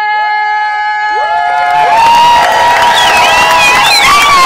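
A singer's long held note over a PA comes to its end as a crowd breaks into cheering, whoops, whistles and applause, building from about a second in and getting loud by two seconds.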